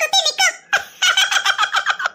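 High-pitched, sped-up cartoon character voice: a quick burst of speech, then from under a second in a rapid run of even, chattering pulses, about ten a second.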